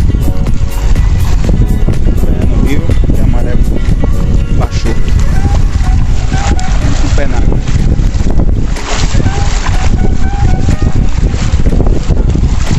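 Wind buffeting the microphone in a continuous loud rumble, with people's voices in the background.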